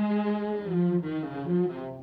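Orchestral cartoon underscore: low bowed strings play a short phrase of a few held notes that step down and back up.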